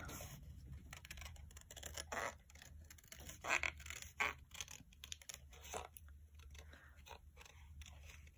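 Small scissors fussy-cutting printed paper: faint, irregular snips as the blades work close around the outline of a picture.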